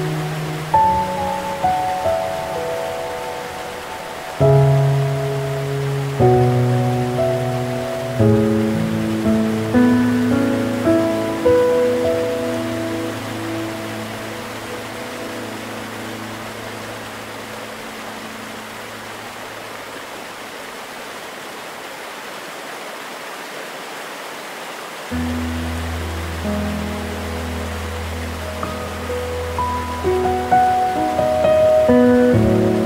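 Slow, gentle piano music over a steady rush of waterfall sound. The piano thins to a few fading notes in the middle, and a deep low tone comes in about 25 seconds in as the notes return.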